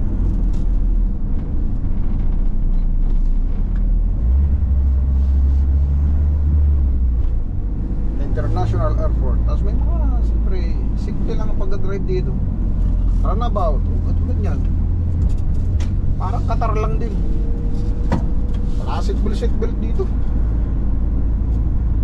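Diesel engine and road noise inside the cab of a moving Renault van: a steady low drone that grows heavier for a few seconds early on, then settles.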